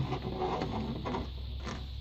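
Clear plastic packaging crinkling and rustling in the hands as a trading card is worked loose from its plastic insert, with soft irregular crackles that thin out after the first second.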